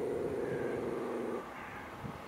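Small dog's steady, sustained growl at another dog across a fence, a warning growl that stops abruptly about a second and a half in.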